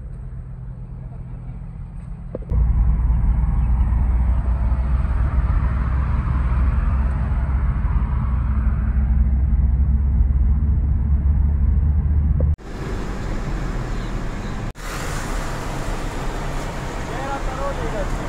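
Car on the move: a steady low engine and tyre rumble heard from inside the cabin, then, after a sudden cut, a brighter rush of wind and road noise as from an open window beside traffic.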